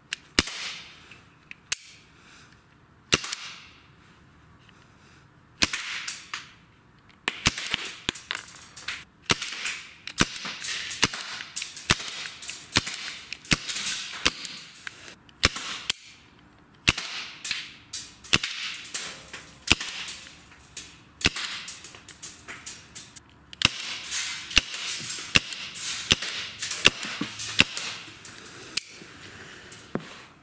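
Well G293A CO2 airsoft revolver firing BBs: a string of sharp cracks, a second or more apart at first, then from about a quarter of the way in coming quickly, several a second.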